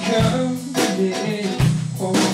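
Rock band jamming: electric guitar playing held, distorted-sounding notes over a drum kit, with a few sharp drum hits, one near the start, one past the middle and one near the end.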